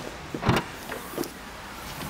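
Mercedes-Benz A200 hatchback tailgate being opened: a sharp clunk of the latch releasing about half a second in, then two lighter knocks as the tailgate lifts.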